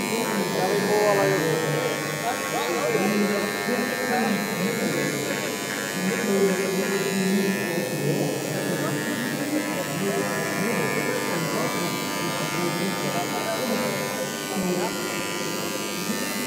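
Handheld Dremel rotary tool running with a steady motor whine as its bit engraves lines into a sheet of acrylic.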